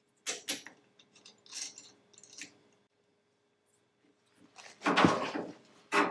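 Small metal clinks and rattles as the panhard bar is turned and fitted onto its mounting bolt by hand, then a louder knock about five seconds in.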